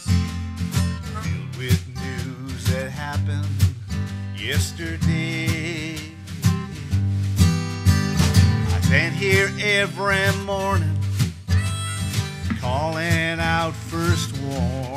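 Live instrumental passage on strummed acoustic guitar, with a harmonica playing a wavering, bending melody over the chords.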